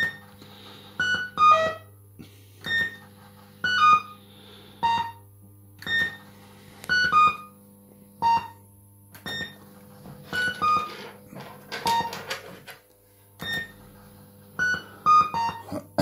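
Crown Gambler fruit machine playing short electronic bleep tunes as its reels spin and stop. Groups of a few quick notes come about once a second over a steady low electrical hum.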